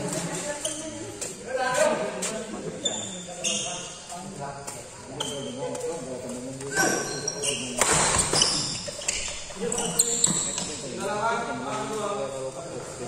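Voices talking and calling out across a badminton court, broken by several sharp hits of rackets on the shuttlecock and short high squeaks from shoes on the court floor.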